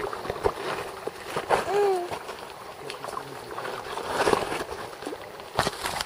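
Small mountain creek running, with splashing in the water while a hooked trout is being played. A short voice call comes about two seconds in, and knocks of the camera being handled come near the end.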